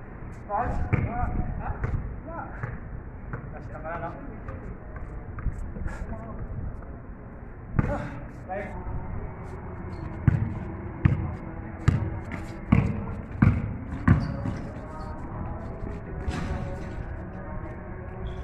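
A basketball dribbled on a paved court: a run of six sharp bounces, about one and a half a second, in the second half, with players' voices calling out around it.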